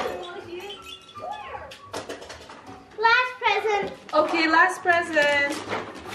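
Electronic baby toy playing a sung tune, faint at first and much louder from about halfway through.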